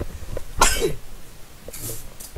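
A man coughing: one loud, harsh cough about half a second in, then a shorter burst of breath near the end.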